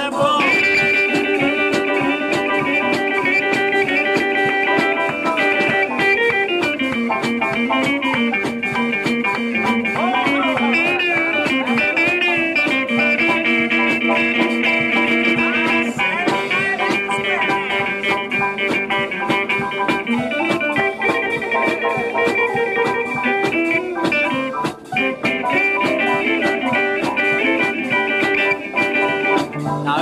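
Instrumental break of a 1950s rockabilly song: a lead guitar plays held and bent notes over a steady rhythm backing, with no singing.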